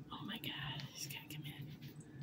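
A person whispering softly, with a few light clicks.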